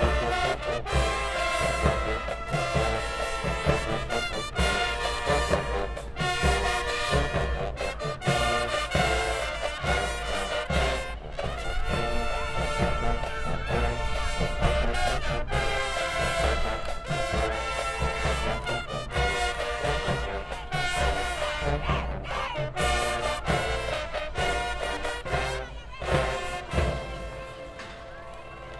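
High school marching band playing a brass-heavy stand tune, with horns over a steady drum beat; the music stops about a second before the end.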